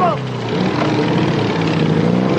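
Motorcycle engine running and revving as the rider pulls away, its pitch rising and falling. A woman's shout cuts off just at the start.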